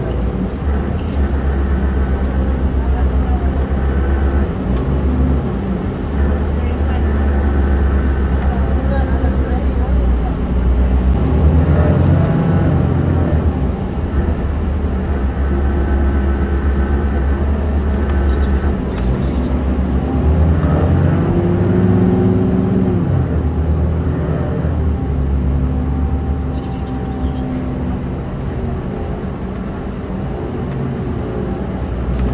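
Engine and road noise inside a moving city bus: a steady low drone whose engine note rises and falls as the bus pulls through traffic.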